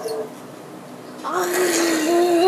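A young boy's voice: a short lull of room noise, then a little over a second in he starts a long, held vocal note at a steady pitch.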